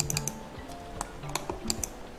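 Scattered clicks of a computer keyboard and mouse in use, over quiet background music.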